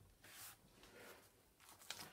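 Near silence: room tone, with faint rustles and one brief click near the end.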